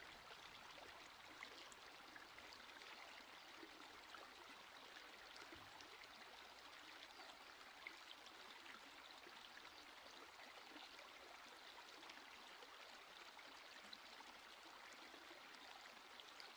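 Near silence, with only a faint, steady background hiss.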